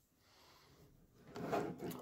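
Near silence, then about a second and a half in, scratching noises as the plastic case of a ThinkPad P51 laptop is handled and turned over.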